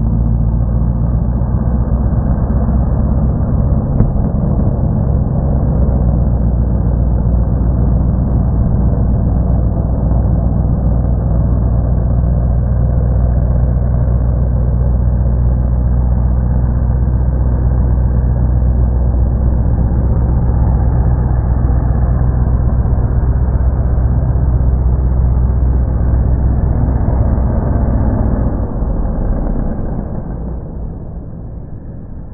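Mud bog truck's engine running hard and steady as the truck drives through a long mud pit, its tires churning mud and water. The sound holds level throughout and drops away in the last couple of seconds.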